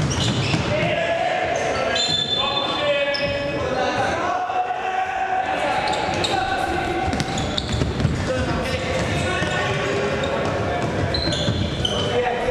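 Futsal being played on a wooden indoor court: the ball knocks and bounces off feet and floor, with voices calling out, all echoing in a large sports hall.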